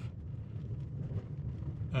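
A pause in speech over a low, steady rumble inside a car, with wind blowing in through the open window.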